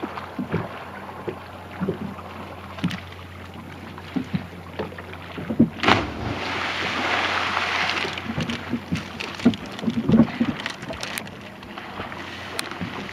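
A person hitting the lake water after a cliff jump about six seconds in: a sharp splash followed by a couple of seconds of rushing spray. Small water slaps and knocks against the boat hull come and go throughout.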